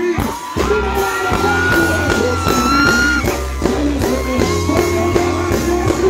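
Live reggae band playing loudly with a singer's voice over it through the stage sound system, with one long held high note from about one to three seconds in.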